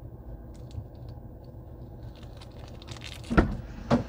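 Small plastic bag of metal ear plugs being handled and opened by hand: faint crinkles and light clicks, then two louder sharp crackles close together near the end.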